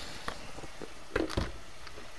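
Ground beef sizzling gently in a skillet. About a second in there is a brief thump as ketchup is squeezed from the bottle into the pan.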